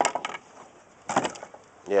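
Wooden skirt panels of a hot tub knocking and scraping as they are handled by hand. There is a sharp knock at the start with a few lighter clicks after it, and another knock about a second in.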